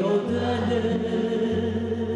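A tamburica band of tamburas and an upright bass plays with a woman singing. The voice and instruments hold long, steady notes over a low sustained bass.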